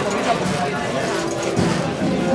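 Costaleros' feet shuffling and stepping together on the street as they carry the rehearsal frame of a Holy Week float, with people talking in the background.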